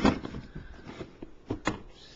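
Plastic storage bin being pulled out from under a bed and handled: a loud thump at the start, then quieter rummaging and two sharp clicks about a second and a half in.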